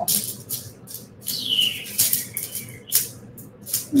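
Loose glass and metal beads rattling and clicking against one another and a metal tray as a hand stirs and sorts through them, in short irregular clatters.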